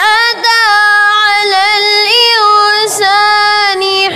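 A boy's high voice chanting Quranic recitation (tilawat) in long, held melodic notes with ornamented turns of pitch. It breaks off briefly twice, once just after the start and once near the end.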